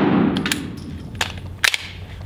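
The fading echo of a Walther PDP pistol shot in an indoor range, followed by a few short, sharp clicks about a second in and near the end. After the shot the pistol's slide fails to lock back on the empty magazine.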